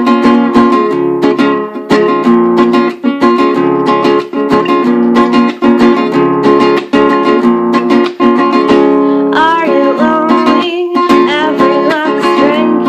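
Acoustic guitar strummed steadily in an instrumental passage. A woman's singing voice comes back in after about nine and a half seconds, over the continuing strumming.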